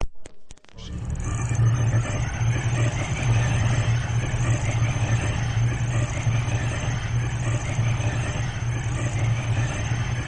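A few short clicks, then from about a second in a steady low rumbling drone with faint rising sweeps repeating above it.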